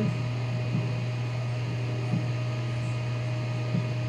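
A steady low electrical hum with no change in pitch or level, with a few faint soft ticks over it.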